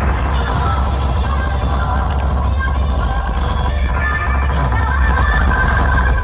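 Loud electronic dance music with a steady, heavy bass played through large stacked DJ speaker boxes.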